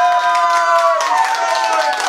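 A group of people clapping along under a voice that holds a long drawn-out note for about a second, then a second, slightly lower one.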